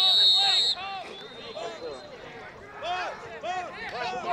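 A referee's whistle blows once, a loud, steady, high blast of under a second, followed by scattered shouts and calls from players and spectators across the field.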